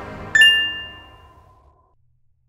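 A single bright chime strikes about a third of a second in, over the fading tail of a low musical logo sting, and rings away over about a second and a half.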